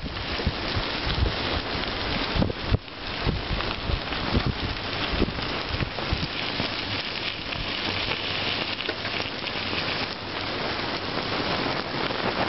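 Bicycle tyres rolling over a gravel trail, a steady hiss, with wind buffeting the microphone in uneven low gusts as the bike moves.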